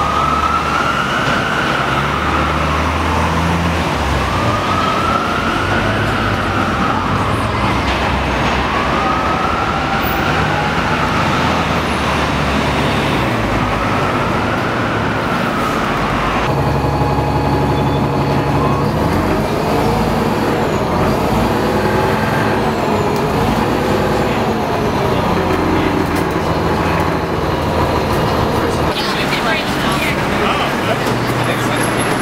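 An emergency vehicle's siren wailing, rising and falling about every four and a half seconds over city traffic and engine noise. About halfway through the sound changes abruptly, and a lower-pitched wail comes and goes over the traffic.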